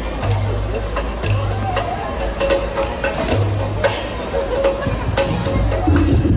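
A pause between songs on a live stage: scattered light taps and knocks, faint voices, and a low hum that comes and goes, with no song being played.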